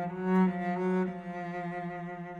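A bowed cello holding one long sustained note in a slow jazz chamber-trio recording, swelling about half a second in.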